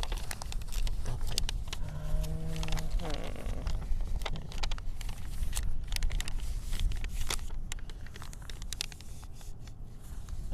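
Sheets of white paper being folded and creased by hand into paper airplanes: crisp crinkles and rustles throughout, over a low wind rumble on the microphone. A short low hum, held for about a second, sounds about two seconds in.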